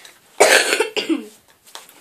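A boy coughing twice in quick succession, the first cough louder.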